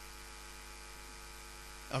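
Steady electrical mains hum with a faint hiss, unchanging throughout.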